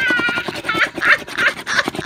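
A coin scratching quickly back and forth over a lottery scratch-off ticket, many rapid strokes. Short excited vocal sounds come over it, the clearest at the very start.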